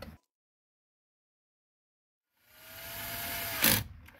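Power drill with a 7mm socket on an extension driving a screw into a plastic steering-column shroud: after about two seconds of dead silence the motor whirs up for just over a second, its whine sagging as the screw seats, and stops with a sharp click.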